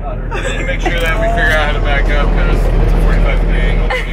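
Charter bus engine and road noise droning steadily inside the passenger cabin, with several passengers talking over it.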